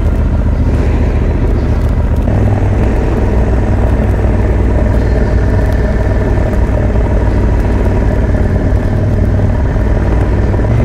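Motorcycle engine running steadily while riding, mixed with wind and road noise; the engine note shifts slightly about two seconds in.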